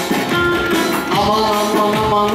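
Live Turkish folk dance music for spoon dancing: a held, wavering melody line over a steady rhythm of short clacks and beats, in which the dancers' wooden spoons clack along.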